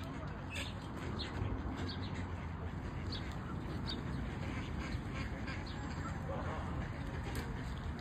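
Flock of Canada geese and mallard ducks calling: many short, scattered calls and quacks over a steady low rumble.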